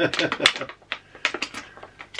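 Packaging crinkling and clicking in quick irregular crackles as a boxed item is handled and unwrapped by hand.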